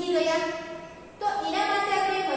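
A woman's voice speaking, with a brief pause about a second in.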